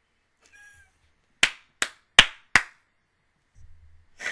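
Four sharp hand claps in quick succession, a little under half a second apart.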